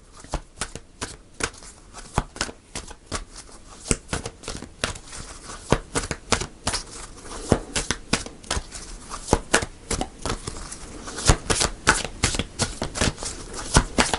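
A tarot deck being shuffled by hand: a steady run of quick card clicks and flicks, busier and louder over the last few seconds.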